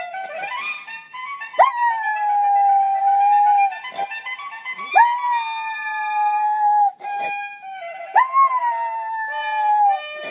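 A Schnauzer howling along with a trumpet fanfare. It gives three long howls, each starting with a sharp upward swoop and then sinking slowly in pitch.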